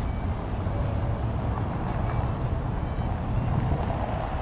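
Steady hum of road traffic, with a low, uneven rumble of wind on the microphone.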